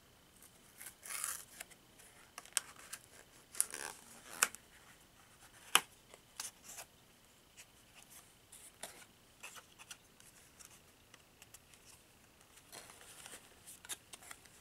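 Close-up handling of a small pink cardboard product box as it is opened: scattered scratching, tapping and tearing sounds, with one sharp click about six seconds in.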